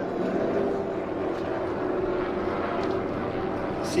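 A pack of NASCAR Cup Series stock cars running at speed, their V8 engines blending into a steady, even drone.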